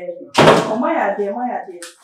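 A kitchen wall-cabinet door banged shut about half a second in, followed by a voice speaking.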